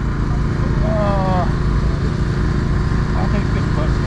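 A steady low engine drone runs through, with a brief voice about a second in.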